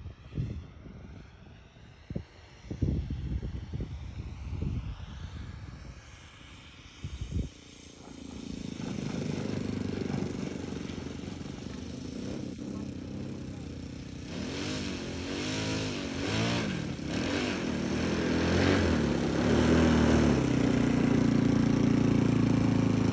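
Saito 125a four-stroke glow engine of a radio-controlled Christen Eagle II biplane, turning a 16x6 prop, running at low throttle as the model lands and taxis in. It grows louder as the plane nears, its pitch rising and falling several times in the middle, and settles into a steady idle close by at the end. Irregular low rumbles fill the first few seconds.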